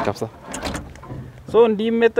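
Men talking, with a short noisy rush between phrases about half a second in, then a drawn-out spoken syllable.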